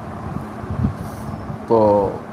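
Low rumbling background noise with a faint steady hum, then a man says one short word near the end.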